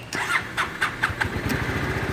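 2006 Yamaha Morphous scooter's 250 cc single-cylinder engine being started: about a second and a half of cranking and catching strokes, then it settles into a steady, even idle.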